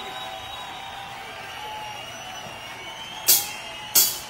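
Live rock band between songs: faint sustained, slowly wavering tones from the stage rig over low hall noise, then two sharp drum hits about half a second apart near the end, counting the band into the next song.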